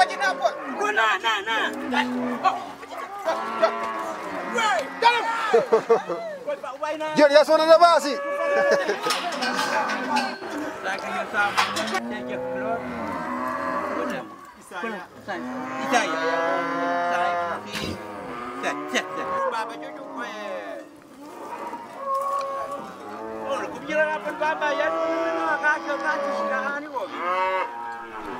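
Many penned cattle mooing over one another, their calls overlapping almost without a break, with a few sharp knocks among them.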